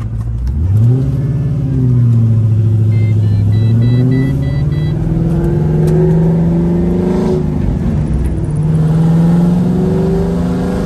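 Pontiac GTO's V8 heard from inside the cabin, pulling under acceleration after its sensor replacements and transmission fluid change. The engine note rises about a second in and climbs again from about five seconds in. It drops at a gear change about seven seconds in, then climbs once more. A quick run of faint electronic beeps sounds about three seconds in.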